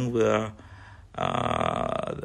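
A man's voice speaking Khmer: a few words, a short pause, then a long drawn-out voiced sound held steady for about a second.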